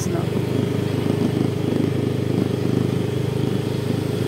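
Motorcycle engine running steadily, an even low engine tone.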